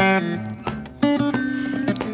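Acoustic blues guitar playing a short instrumental phrase between sung lines, with sharply plucked notes.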